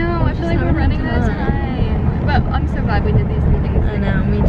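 Steady low rumble of road and engine noise inside a car's cabin, under people talking.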